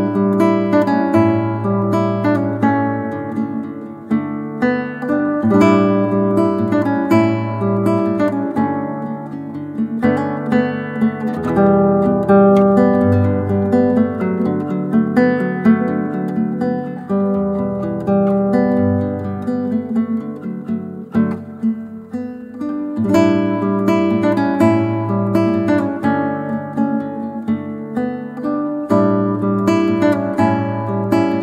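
Acoustic guitar instrumental: notes picked and strummed over a moving bass line, with no singing.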